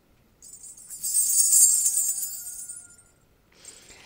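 Shaken metal jingles, a bright high shimmer that swells in about half a second in, is loudest around a second and a half, and dies away by three seconds, with a faint held tone beneath.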